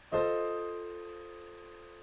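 Digital piano playing a four-note F7 chord in root position (F, A, C, E-flat) in the right hand, struck once just after the start and held, ringing and slowly fading.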